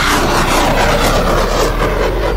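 Rocket launch from an unmanned tracked vehicle: a loud rushing noise that bursts in and slowly dies away.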